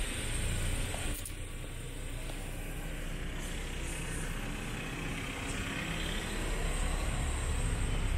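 Steady low rumble of a motor vehicle against outdoor background noise, with a single sharp click about a second in.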